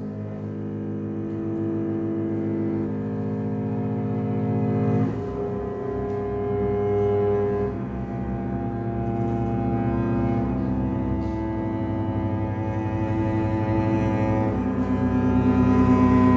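Bowed cello and double bass playing long sustained microtonal chords in the low register, the harmony shifting every few seconds and swelling louder near the end.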